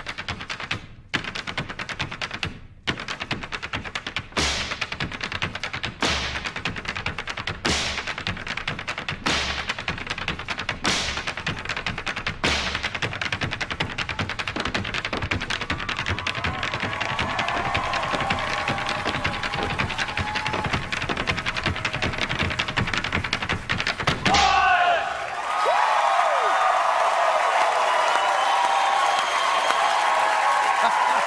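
A line of Irish step dancers' hard shoes drumming in unison on a stage: rapid clicking taps with a heavy accented stamp about every second and a half. The routine ends on a final stamp, and a studio audience breaks into cheering and applause for the last few seconds.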